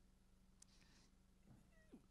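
Near silence: faint room tone with a low steady hum, and a faint brief gliding sound near the end.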